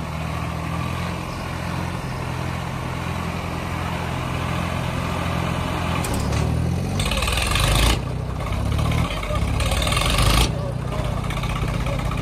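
Swaraj tractor's diesel engine running steadily, then about six seconds in its note changes as it is worked harder, with two loud rushing bursts of noise, one about seven seconds in and one about ten seconds in.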